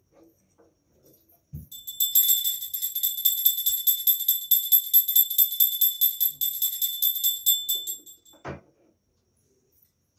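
A puja hand bell (ghanti) rung rapidly and without a break for about six seconds, giving a high, clear ringing, as during an aarti; it stops just after the eighth second, followed by a short knock.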